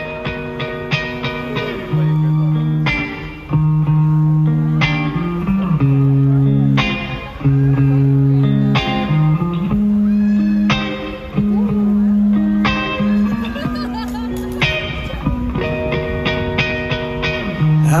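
Live band playing a song's instrumental intro through a stage PA: an electric guitar picks a run of notes over sustained bass notes that change every second or two.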